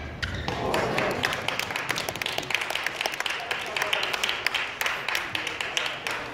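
Scattered spectators clapping in a sports hall for about five seconds as a badminton rally ends, with some voices calling out.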